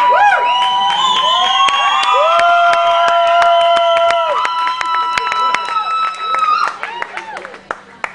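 A crowd cheering, with several voices holding long shouts at once, some rising in pitch, and scattered hand claps. It dies down about two-thirds of the way through.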